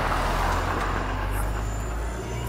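Road traffic on a city street: a steady low engine hum with a rush of passing-vehicle noise that swells in the first second and then eases.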